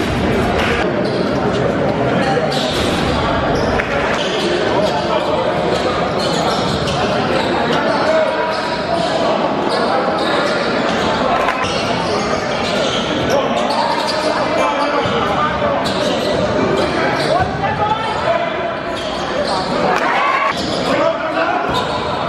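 Basketball game sound in a gymnasium: a ball bouncing on the court amid the voices of players and spectators, echoing in the hall.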